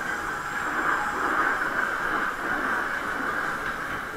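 Waltzer fairground ride running, heard from inside a spinning car: a steady rolling mechanical noise of the cars going round the undulating track, swelling a little about a second in.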